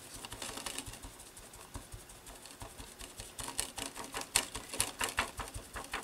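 A small sponge dabbing yellow paint through a plastic stencil onto paper: a run of quick, light taps, sparse at first and busier from about halfway.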